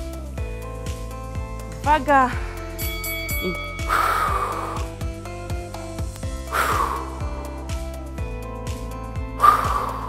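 Workout background music with a steady beat, with a woman's forceful exhalations three times, about every two and a half seconds, as she crunches up during an abdominal exercise. A short drawn-out spoken syllable comes about two seconds in.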